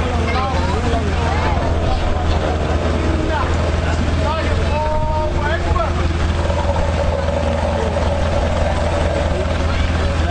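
Steady, loud low machinery hum, with voices and some gliding pitched calls over it.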